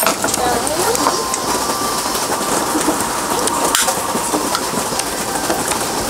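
Steady hiss of rain, with faint talk in the first second or so.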